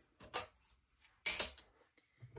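Two brief handling noises of craft pieces being moved on a tabletop, the second, about a second and a half in, the louder.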